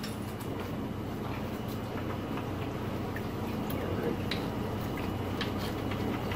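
Water churning and lapping in a shallow coral frag tank stirred by powerheads, over a steady low hum. Scattered small drips and splashes come through on top.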